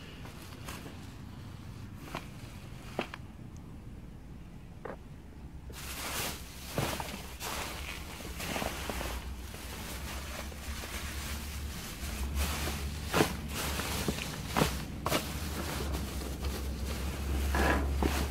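Plastic trash bags rustling and crinkling as they are handled and shifted, with scattered clicks. The first few seconds hold only a few clicks; from about a third of the way in the crinkling becomes dense and continuous.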